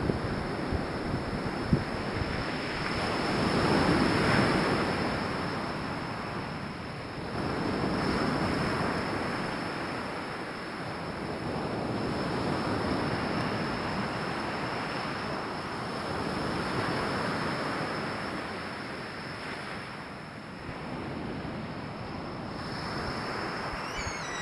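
Ocean surf: small waves breaking and washing in, the rush swelling and easing about every four seconds.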